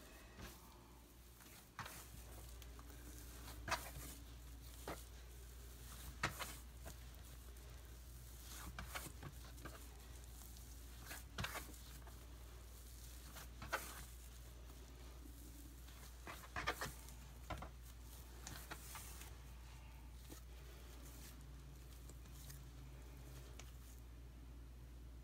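Hands kneading and patting a ball of bread dough on a plastic cutting board: soft, scattered pats and slaps every second or two, over a faint steady low hum.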